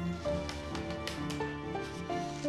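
Instrumental background music: a melody of short, evenly paced notes over held low tones.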